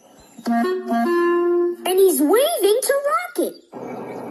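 A short woodwind phrase of a few notes ending on a long held note, then a voice speaking. An even rushing noise comes in near the end.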